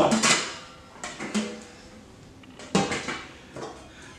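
Stainless steel pots and a lid clanking and knocking as they are lifted and set down on a countertop: a few separate knocks with short metallic ringing, the loudest about three seconds in.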